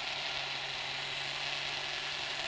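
Electric blender running steadily, its motor holding one even pitch, blending bananas and chocolate yogurt into a smoothie.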